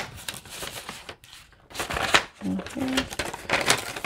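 Paper envelope and Canadian polymer banknotes rustling and crinkling in the hands as cash is slipped into the envelope, in a run of quick irregular crackles.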